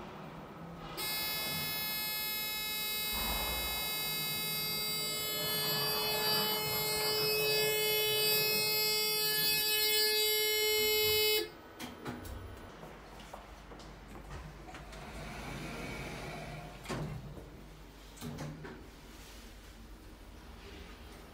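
Otis Gen2 lift's drive giving a steady electronic whine of many fixed high tones during travel. It starts suddenly about a second in and cuts off sharply after about ten seconds, followed by a few faint clicks.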